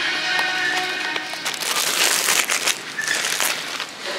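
Background music with held tones, joined from about a second and a half in by close rustling and crinkling handling noise for about two seconds.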